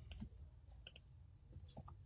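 Computer mouse button clicking a few times, irregularly spaced, with a cluster near the end, as objects are shift-clicked to add them to a selection.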